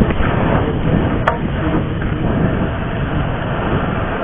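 Wind buffeting a chest-mounted camera microphone as a BMX cruiser rolls along a packed dirt track, a loud, steady rumbling rush. A single sharp click sounds about a second in.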